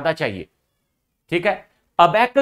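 A man's voice lecturing, broken by a gap of dead silence of nearly a second, then a short spoken phrase.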